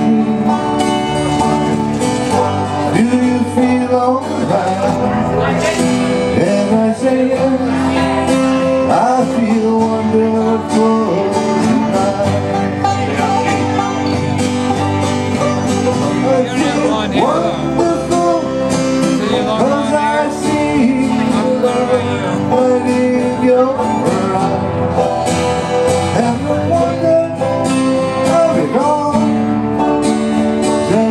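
Live acoustic band playing an instrumental passage of a slow ballad: strummed acoustic guitars over electric bass, with banjo, and a lead melody line that bends and slides in pitch.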